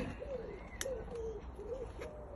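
A dove cooing in the background: a run of low, soft notes, each rising and falling, about three in a row.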